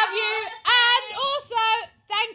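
A woman's high voice singing out drawn-out notes, in short phrases with brief breaks.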